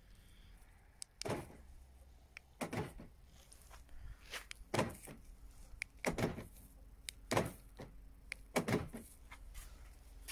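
Audi A6 C5 central door locks clunking as the newly programmed key remote locks and unlocks the car: a series of about six sharp clunks, one every second or two, showing the remote now works.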